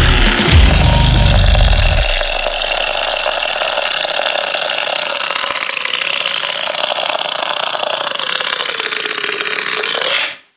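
Goregrind recording: heavily distorted band sound with strong bass that drops out about two seconds in. What remains is a steady wash of distorted noise with no bass.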